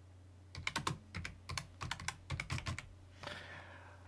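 Typing on a computer keyboard: a quick run of keystrokes starting about half a second in and lasting a little over two seconds.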